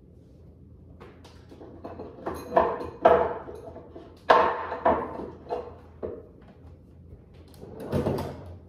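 Wooden kitchen cabinet door being opened and shut while a glass is handled: a series of knocks and clunks, the loudest about three and four seconds in, and another near the end.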